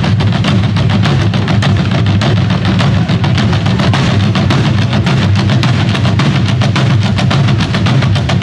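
An ensemble of Korean traditional drums struck with sticks, playing together in a fast, dense, loud rhythm.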